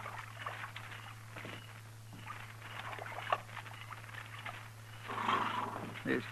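Radio sound effects of horses drinking at water, with scattered small splashes and knocks, and a louder breathy blow from a horse near the end. A steady low hum from the old recording runs beneath.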